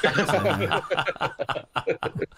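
Two men laughing together, chuckles that break into short snickering bursts and die away near the end.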